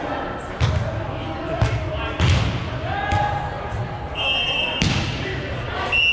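Volleyball being hit during a rally: several sharp slaps of hands on the ball, echoing in a large hall, with voices calling.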